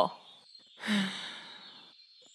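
A person sighs once: a breathy exhale that starts about a second in and fades away.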